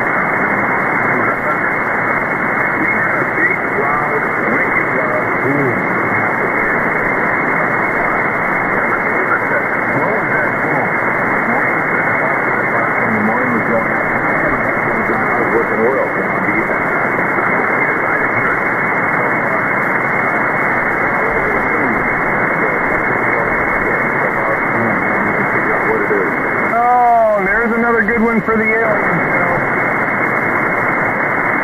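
Shortwave receiver audio from the 160-metre amateur band in lower sideband: steady static hiss cut off above the voice range, with weak voices of ham operators faintly heard under the noise. Near the end, a few seconds of whistling tones sweep down and back up; the listener wonders whether this is an airburst from a meteor in the upper atmosphere.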